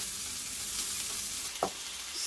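Beef steak and asparagus frying on a hot stainless steel flat-top griddle, a steady sizzle. A single short knock comes near the end.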